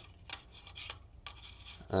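A few light plastic clicks with faint scraping between them, as a lightweight plastic model tank with magnets on its base is shifted about on the deck of a Bachmann OO gauge Warflat wagon, sticking in place.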